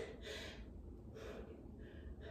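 A woman's faint breathing as she works through a leg-lift exercise, a few soft breaths with no words.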